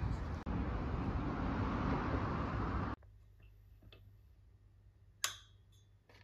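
A steady, noisy background din that cuts off abruptly about halfway through. It is followed by a quiet room with a faint hum and a single click near the end.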